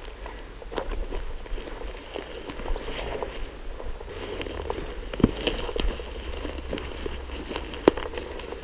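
Footsteps pushing through dense bracken ferns and forest undergrowth, the fronds rustling and dry twigs crackling underfoot, with a few sharper snaps about five seconds in and near the end.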